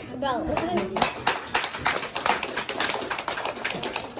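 A small group clapping hands, quick uneven claps starting about a second in, with children's voices just before.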